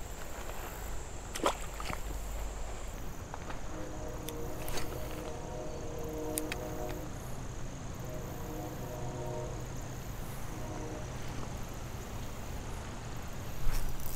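Lew's Mach 2 spinning reel being cranked on a retrieve, its gears whining steadily in two stretches of a few seconds each. A sharp click comes about a second and a half in.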